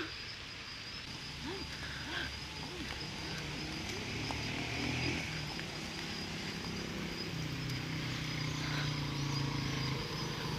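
A few short whines from a young pitbull about two seconds in, then a motorcycle engine approaching, growing steadily louder over the last few seconds.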